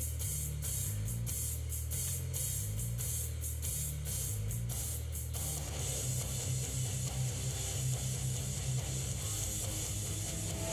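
Backing track of drums and bass guitar playing with a steady beat; the cymbals turn into a denser wash about five seconds in.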